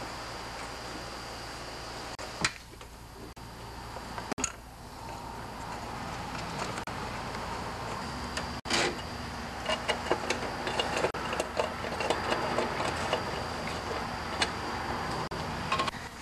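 Handling noise from the engine's shroud parts and hoses being fitted back on by hand: a few sharp clicks and knocks, then a run of small taps and rustles in the second half, over a steady low hum. The engine is not running.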